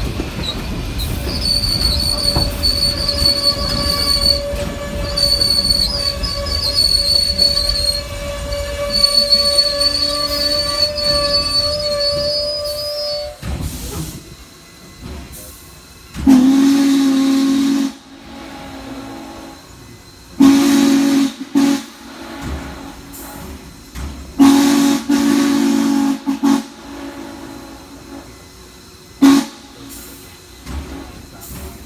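Norfolk & Western J-class No. 611 steam locomotive rolling with a steady high squeal over its running rumble, which then fades. From about the middle on, its chime steam whistle sounds in loud blasts: one long, two short close together, another long, and a brief toot near the end.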